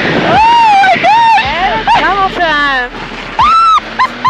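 High-pitched wordless cries and laughter from a passenger in an aerobatic plane, with quick falling squeals about two and a half seconds in. A steady aircraft engine drone runs faintly underneath.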